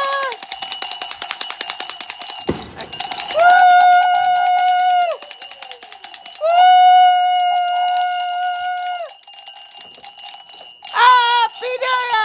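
Three long, steady, horn-like tones, each held for one and a half to two and a half seconds with gaps between, over a fast, even rattle, with a short thump about two and a half seconds in.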